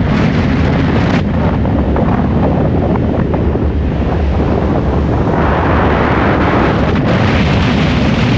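Wind buffeting the microphone of a camera mounted outside a moving car, over a steady low road rumble. The hiss grows brighter about five and a half seconds in.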